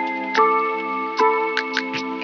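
Lo-fi instrumental music: soft keyboard chords that change twice, over light, sharp ticking percussion.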